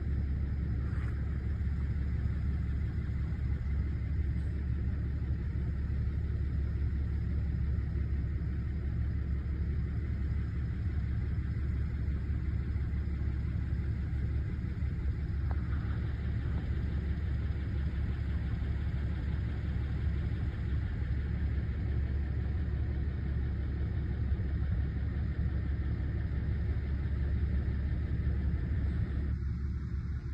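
A steady low rumble with no clear pitch, even in loudness throughout.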